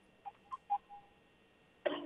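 Mostly quiet remote-guest phone line, cut off above the upper mids, with a few faint short blips in the first second. A man's voice starts on the line just before the end.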